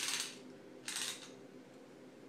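A retractable measuring tape being pulled out of its case, its rapid clicking ending just after the start, then a short swish about a second in as the tape is handled.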